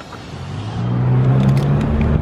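A motor vehicle's engine running nearby, growing louder over the first second and then holding steady as a low hum with a gently wavering pitch.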